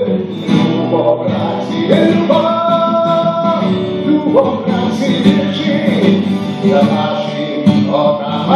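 A man singing live while playing an acoustic guitar, with long held notes in the melody.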